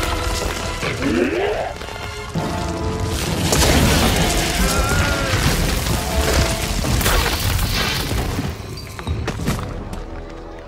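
Dramatic orchestral film score over a rockslide: deep rumbling booms and crashing rock as a cliff collapses, with monster shrieks gliding up in pitch among it.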